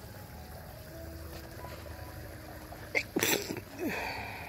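A husky's muzzle splashing and snorting in pool water in one short burst about three seconds in, as it snaps at a beetle floating on the surface, over a faint steady background.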